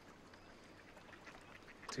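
Ducks quacking faintly, a few short calls.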